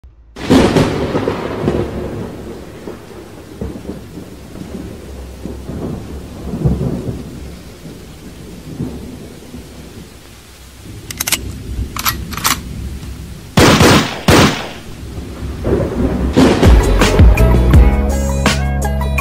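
Thunderstorm with rain: a thunderclap just after the start rolls away into rumbling, with sharp loud cracks of thunder about two-thirds through. A music beat comes in near the end.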